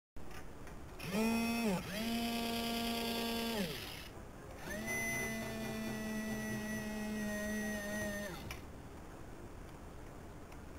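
Small geared electric toy motors whining in three runs, each speeding up as it starts and winding down as it stops. Two short runs come in the first four seconds, then a longer one from about five to eight seconds.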